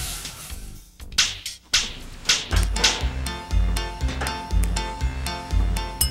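Upbeat children's-style background music with a steady bass beat, starting about two and a half seconds in, after a few short whooshing noises.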